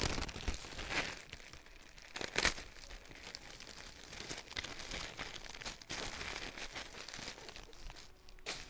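Clear plastic garment bags crinkling and rustling as they are handled. A few sharper crackles stand out, the loudest about two and a half seconds in.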